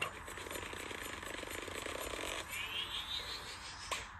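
Cartoon sound effects heard through a screen's speaker: a fast buzzing rattle for about two and a half seconds, then a rising whistle-like sweep until near the end.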